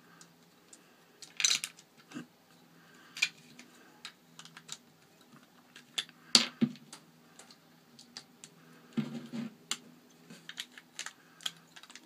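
Small plastic Lego bricks clicking and knocking as they are pressed onto a Lego plate by hand: irregular sharp clicks, the loudest about six seconds in.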